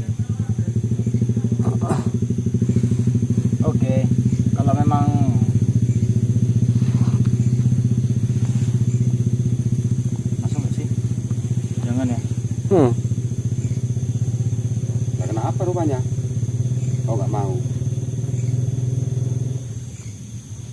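A loud, steady low droning hum with a fast even pulse, like a small engine running, with a few short murmured voice fragments over it; the drone drops away at the end.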